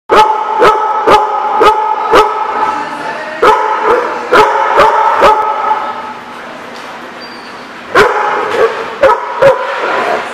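A dog barking in short, sharp barks during rough play with another dog, about two barks a second in quick runs. There is a lull in the middle, and the barking starts again about eight seconds in.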